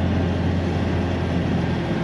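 Light propeller airplane's engine running steadily at low power, a low, even drone heard from inside the cockpit.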